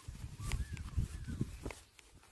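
A few short chirping bird calls over an uneven low rumble and soft thuds as a horse walks on grass close by.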